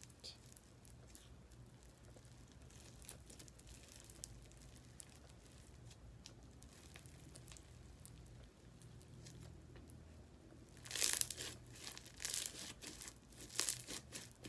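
Textured, bumpy slime being stretched and squeezed by hand: faint scattered crackles, then a louder run of crackling from about eleven seconds in.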